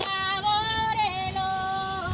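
A high-pitched voice singing a garba song, holding long drawn-out notes with brief slides between them.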